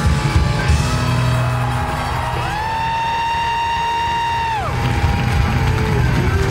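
Live rock band playing loudly, drums and bass heavy in the mix. About two seconds in, one long high note slides up into pitch, is held for a couple of seconds, then bends down and fades back into the band.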